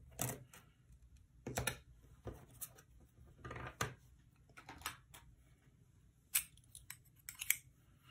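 Quiet handling noises of a clear plastic ruler and washi tape being positioned on a planner page: several soft taps and rustles, scattered and irregular.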